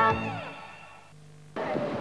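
The last notes of an advertising jingle die away, with one falling note. About a second and a half in, the sound cuts suddenly to a steady street background noise.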